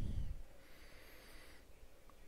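A man's breath fading out in the first half second, then near silence.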